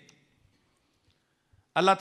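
Near silence in a pause between a man's amplified speech, broken only by a couple of faint clicks; speech resumes near the end.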